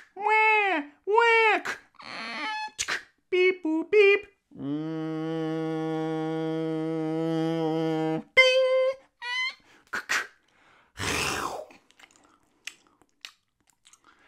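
A man making baby-crying sounds with his voice in short rising-and-falling wails, then a steady held hum for about three and a half seconds. More short cries follow, then a brief burst of noise about eleven seconds in.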